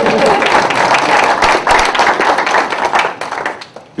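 Audience applauding with many hands clapping, dying away near the end.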